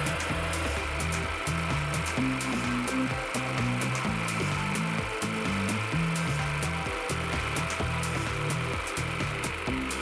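Background music with a steady beat over a jigsaw mounted upside down in a table, running steadily as it cuts through a plywood strip with its blade tilted to 45 degrees.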